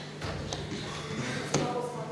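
A single sharp click about one and a half seconds in, over room noise with a low steady hum.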